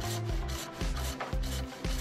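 Hand hacksaw cutting through a composite decking board in quick back-and-forth strokes, with background music underneath.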